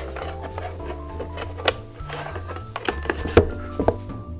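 Background music with a stepping bass line and held notes, over which a few sharp clicks and knocks of handling the drum pad and its power cable come through, the loudest about three and a half seconds in.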